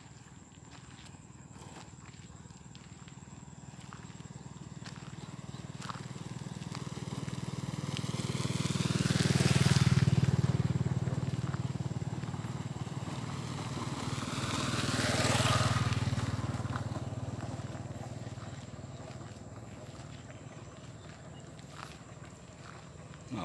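Two motor vehicles pass one after the other, unseen. Each engine hum swells as it approaches and fades as it moves away. The first is loudest about ten seconds in, and the second, slightly quieter, passes a few seconds later.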